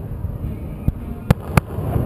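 Aerial fireworks shells bursting: a faint bang about a second in, then two sharp, louder bangs close together.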